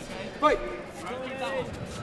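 Speech: a referee's single shout of "Fight!" about half a second in, restarting the bout, with fainter voices after it.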